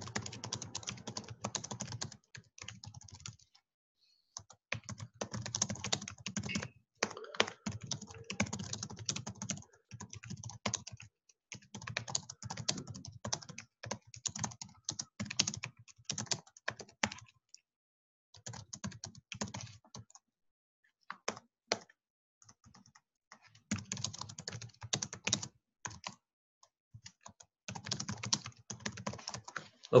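Typing on a computer keyboard: runs of rapid keystrokes broken by several pauses of a second or more.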